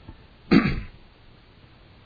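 A man clearing his throat once: a single short, loud rasp about half a second in.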